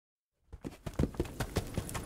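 Horse hoofbeats: a quick, uneven run of low thuds, about five a second, starting about half a second in.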